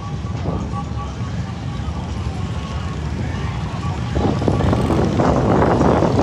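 Wind buffeting the microphone of the SlingShot capsule's onboard camera as the capsule moves through the air, a steady low rumble that swells into a louder rushing noise about four seconds in.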